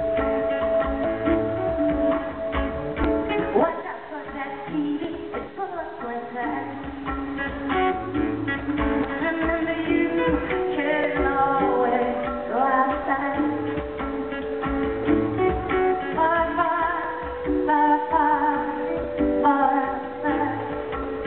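Live solo song: a woman singing over her own acoustic guitar playing.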